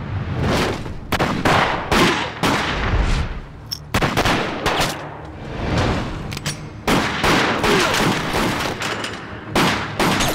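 Pistol gunfire in a film gunfight: many sharp shots in quick, irregular volleys, with two short lulls between them.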